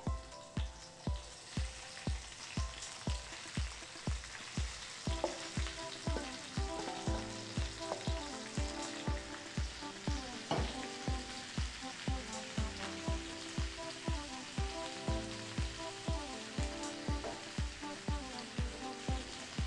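Julienned onion sizzling in bacon fat in a frying pan as it is stirred, being softened until translucent. Background music with a steady beat, about two beats a second, plays underneath.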